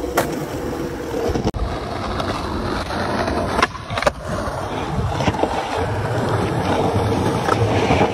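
Skateboard wheels rolling on concrete pavement, with the board's tail popping and landing in sharp clacks, two close together about halfway through.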